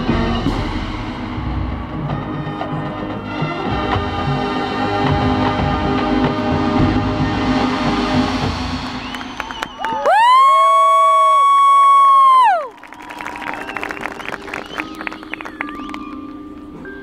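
Marching band playing its field show: full band with brass and drums, then about ten seconds in a loud held note that bends up at its start and falls away after about two and a half seconds. It is followed by quieter mallet percussion such as marimba and glockenspiel.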